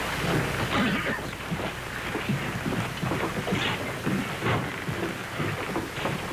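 A roomful of people moving about and settling onto wooden pews: irregular footsteps, knocks and rustling.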